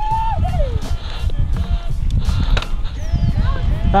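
Riding noise of a mountain bike descending a rough dirt singletrack at speed, picked up by a helmet camera: a steady low rumble of wind on the microphone with frequent sharp rattles and clicks from the bike over the trail.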